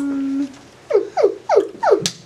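A person's non-speech vocalizing: a short held hum, then four quick cries, each falling sharply in pitch.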